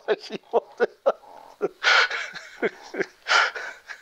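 A man laughing hard in a quick run of short pulses, broken about two seconds in and again a second and a half later by long wheezing gasps for breath.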